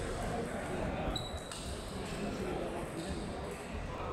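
Table tennis balls knocking on tables and bats in a busy, echoing sports hall, under a steady murmur of voices.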